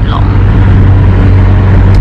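Steady low rumble of car engine and road noise, heard from inside the cabin of a car.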